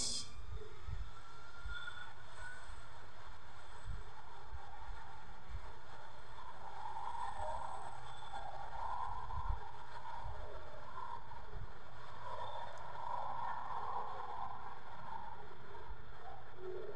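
Rolls-Royce RB211 turbofan engines of a Boeing 757 at takeoff power during the takeoff roll: a steady, loud jet rumble, with a faint rising whine in the first couple of seconds as the engines spool up.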